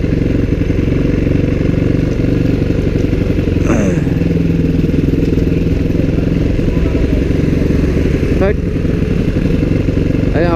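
Dirt bike engine running steadily at low road speed. Its note holds even, with one brief falling sound about four seconds in.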